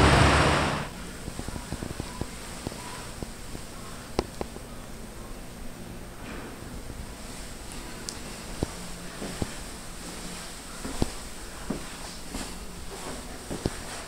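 Quiet indoor room tone with a faint steady hum, broken by scattered small clicks and knocks: footsteps and handling of a hand-held camera carried along a hallway.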